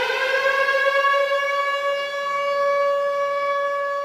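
A siren wail: one pitched tone with strong overtones that rises slowly over the first second and a half, then holds a steady pitch.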